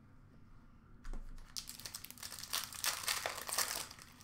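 A trading-card pack's foil wrapper being crinkled and torn open, starting about a second and a half in and getting louder. A soft thump comes just before it.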